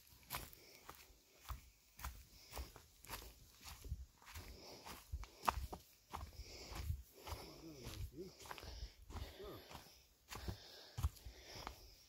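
Footsteps on a dirt forest trail littered with dry leaves and pine needles, faint and at about two steps a second.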